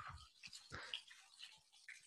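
Near silence in a pause between speech, with a few faint, brief sounds.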